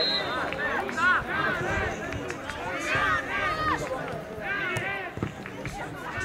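High-pitched shouts and calls of children on a football pitch, overlapping in short bursts, with a single sharp knock about five seconds in.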